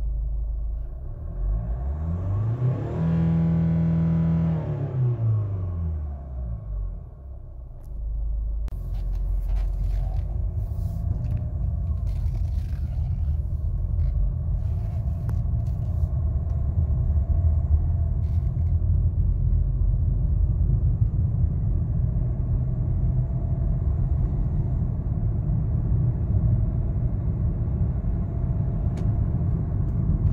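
2015 Hyundai Santa Fe engine, heard from inside the cabin, revved in Park: the pitch rises about a second in, holds briefly and falls back to idle by about six seconds. From about eight seconds the SUV is driving, with a steady low rumble of engine and road noise as it gathers speed.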